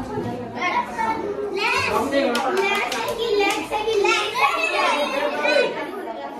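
Children's voices shouting and chattering excitedly over one another while playing, with a few sharp clicks in the middle.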